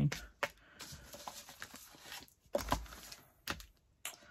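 Collage-covered board panels rustling and knocking on a tabletop as they are handled and turned over, with a few sharp knocks, the loudest about two and a half seconds in.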